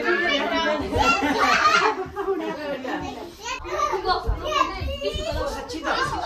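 Several adults and children talking at once, their voices overlapping in lively chatter.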